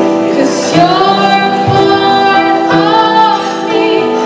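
Female vocalist singing live into a microphone over electronic keyboard accompaniment: drawn-out, gliding sung notes over steady held chords.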